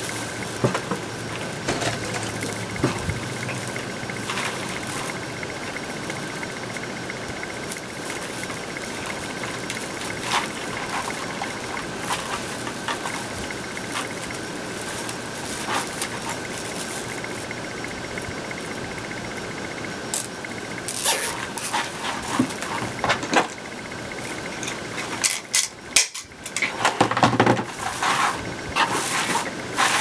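Plastic deco mesh being handled and scrunched into a wreath: intermittent rustling and crinkling that grows busier and louder in the last few seconds, over a steady high hum in the background.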